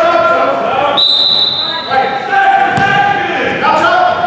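A basketball bouncing on a hardwood gym floor amid voices calling out in a large echoing gym, with a short high squeak about a second in.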